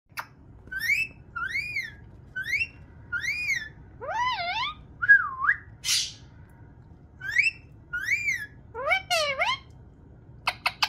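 Indian ringneck parrot whistling a series of short notes that rise and fall in pitch, mostly in pairs, with a short noisy burst about six seconds in.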